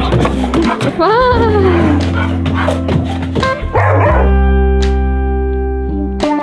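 Dog barking and yowling in play, with a long rising-and-falling cry about a second in, over background music.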